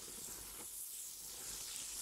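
Melted butter foaming and sizzling faintly in a hot pan as flour is added for a roux: a soft, steady hiss.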